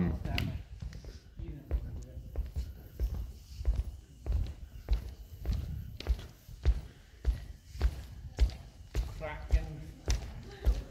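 Footsteps walking at a steady pace across a wooden gym floor, a low thud about every half second.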